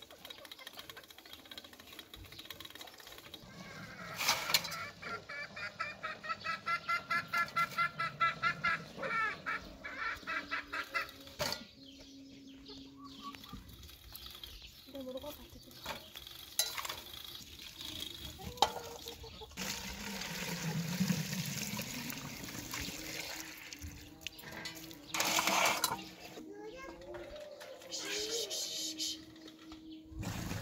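Domestic hens clucking in a quick run of repeated calls, about two to three a second for several seconds.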